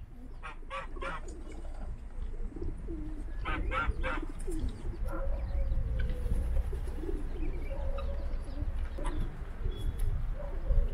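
Pigeons cooing on and off, with two quick clusters of short, higher bird calls, one about half a second in and one around three and a half seconds. A steady low rumble runs underneath.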